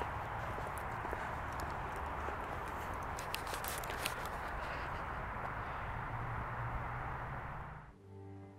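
Footsteps walking along a cemetery pathway over a steady rushing background noise, with a few sharp clicks. The sound cuts off just before the end.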